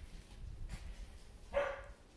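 A Shetland sheepdog puppy gives a single short, high yip-like bark about one and a half seconds in.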